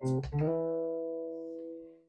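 Electric guitar: two quick plucked notes, then a chord left ringing and slowly fading, cut off abruptly just at the end.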